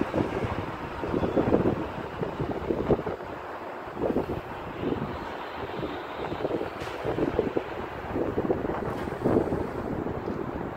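Wind buffeting a phone's microphone outdoors, in uneven gusts that rise and fall every second or so.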